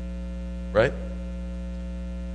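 Steady electrical mains hum with a stack of even overtones, running unbroken under a single short spoken word.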